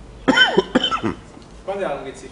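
A person coughs twice, the coughs about half a second apart, followed by a brief stretch of voice near the end.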